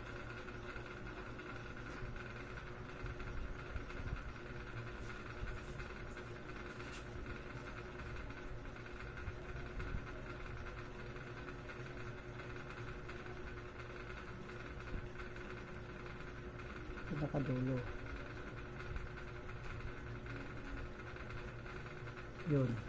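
Quiet room tone with a steady electrical hum, and one short murmur of a man's voice about three-quarters of the way through.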